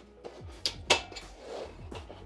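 Linenspa foldable steel platform bed frame being folded up at its hinge: two sharp metal clanks about a quarter second apart, a little over half a second in, over quiet background music.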